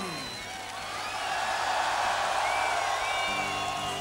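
Large stadium crowd cheering and whistling, the roar swelling through the middle. Near the end a guitar starts sounding held low notes.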